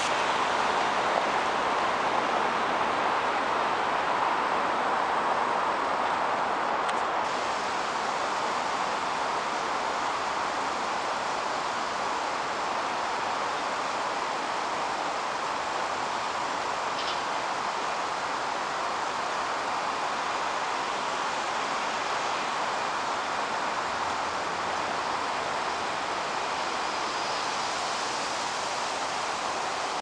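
Steady wash of city road traffic noise, an even hiss with no single vehicle standing out.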